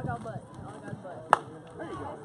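Softball bat striking a pitched ball: a single sharp crack a little over a second in.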